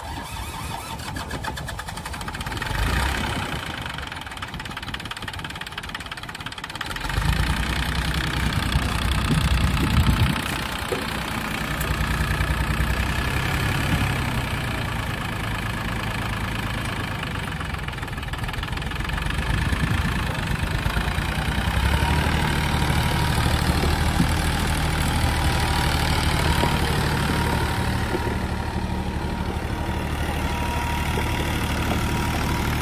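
John Deere 750 compact tractor's three-cylinder diesel engine running as it drives, quieter at first and then much louder from about seven seconds in, holding a steady run from then on.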